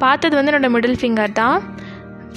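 A woman speaking over background music, with the speech falling away about three-quarters of the way in while the music carries on.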